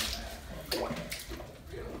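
Ice water sloshing and splashing in a bathtub, with a steady low rumble underneath.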